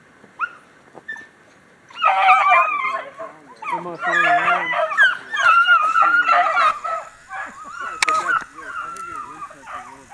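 A small pack of beagle hounds (13-inch females) giving tongue as they run a rabbit's trail, several voices baying and yipping over one another. The pack breaks into full cry about two seconds in.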